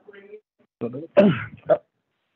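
A man clearing his throat over a phone line, loudest about a second in.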